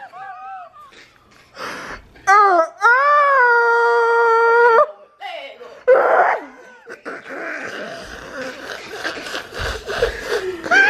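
A high-pitched voice holding one long wordless note for about two and a half seconds, rising at first and then held level, after a few short yelps. A loud short outburst follows, then breathy noise with a low thump near the end.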